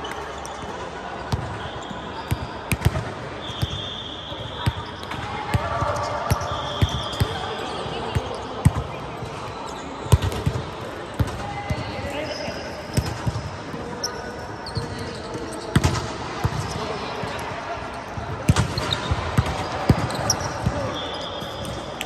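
Indoor volleyball play on a hard gym court: the ball being struck and bouncing in sharp, irregular thuds, with sneakers giving short high squeaks a few times, under players' voices calling out.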